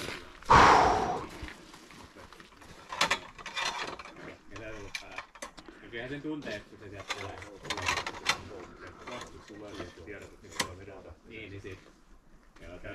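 Scattered mechanical clicks and knocks as a wooden stage prop is handled, with quiet voices. A sudden loud burst comes about half a second in and fades over most of a second.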